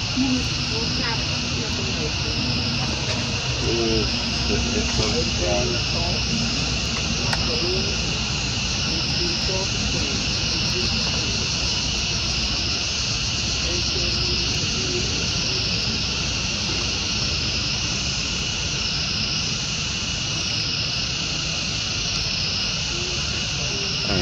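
Steady outdoor background noise: a high whine that swells and fades about every one and a half seconds, over a low rumble, with faint voices now and then.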